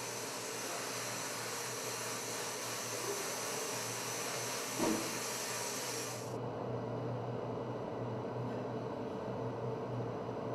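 Sandblasting cabinet blasting glass: a steady hiss of the abrasive air jet, with one small knock about five seconds in. The hiss cuts off about six seconds in, leaving a lower steady hum.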